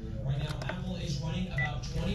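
Faint, indistinct speech over a steady low hum, with one short electronic beep about one and a half seconds in, just after a phone has stopped ringing.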